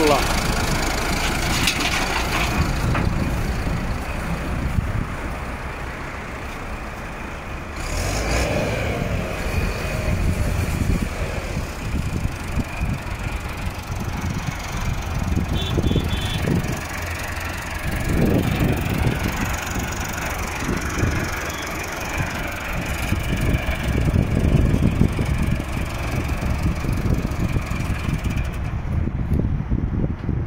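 Massey Ferguson tractor's diesel engine running as the tractor is driven up a ramp onto a lowbed trailer, its level rising and falling unevenly.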